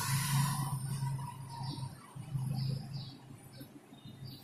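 Pen writing on paper: a few faint, short scratching strokes over a low steady hum.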